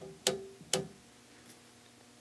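Rotary selector switch on an Eico 1171 resistance decade box clicking through its detents as a knob is turned: three clicks within the first second, each with a brief ringing note, then a faint fourth click.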